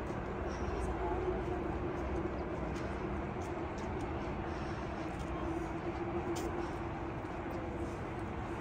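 Steady outdoor background noise with a continuous low drone.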